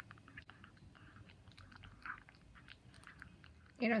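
A 19-year-old ginger cat eating from a glass bowl: quiet, irregular lip-smacking and chewing sounds, several a second.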